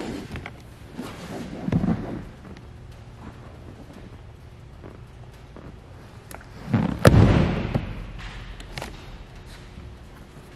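Hinged bench seat lid with under-seat plastic storage being handled: a soft thump about two seconds in as it is lifted, then a loud, sharp thud about seven seconds in as it drops shut.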